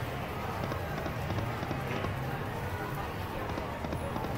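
Casino floor background: a steady murmur of distant voices and machine noise over a low hum, with no distinct chime or jingle standing out.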